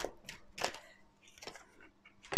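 A large tarot card being drawn off the deck and turned over: a few faint, brief papery flicks and slides of card stock.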